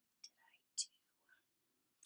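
Near silence broken by one soft, whispery word from a woman's voice.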